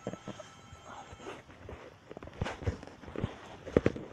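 Irregular knocks and taps over a faint background hiss, with the sharpest pair near the end.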